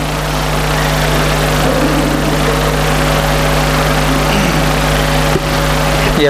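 Loud, steady machine drone: an even noise with a constant low hum under it, like a running motor or engine, dipping briefly about five and a half seconds in.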